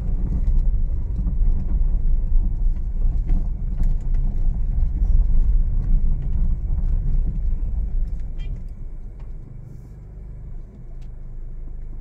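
Low road rumble of a Honda Mobilio rolling over a rough, unpaved road, heard from inside the cabin, with only faint scattered ticks. The suspension no longer clunks now that its loose stabilizer links have been tightened. The rumble dies down over the last few seconds as the car slows.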